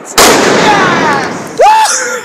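A firework going off after a slow fuse had seemed not to catch: a sudden loud rushing burst with falling whistling tones, fading over about a second and a half. A short shout follows near the end.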